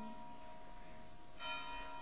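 A faint bell ringing in steady tones, with a fresh strike about one and a half seconds in.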